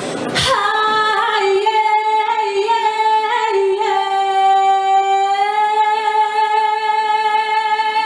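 A woman singing unaccompanied into a microphone: a few short notes, then one long high note held steadily for about four seconds.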